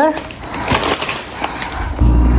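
Plastic water bottles and their shrink-wrap being handled: crinkling rustle with a few light knocks.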